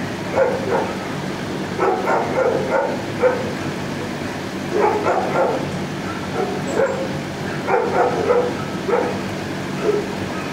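Shelter dogs barking in repeated bursts of several quick barks, a burst every couple of seconds, over a steady low hum.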